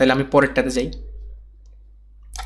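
A man's voice speaking for about a second, then trailing off into a faint, steady low hum.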